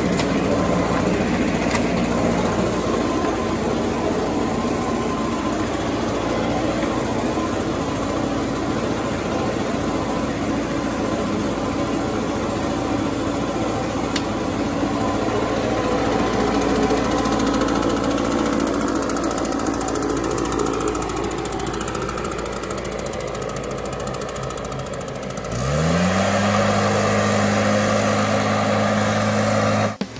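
Gas-powered backpack leaf blower engine running steadily and loudly. About 26 seconds in it revs up, its pitch gliding higher and then holding.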